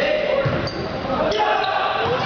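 Volleyball rally in a gym: the ball struck twice, about 0.7 s apart, with short high sneaker squeaks on the hardwood floor. Players and spectators shout throughout, echoing in the hall.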